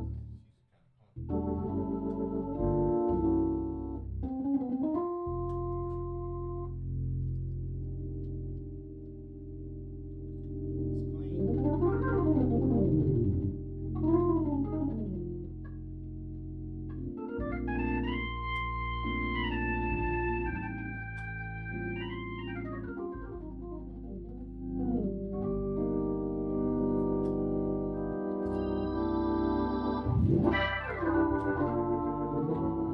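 Hammond B3 organ played: sustained chords over held low bass notes, with quick glissando sweeps down and back up the keyboard, after a brief break about a second in.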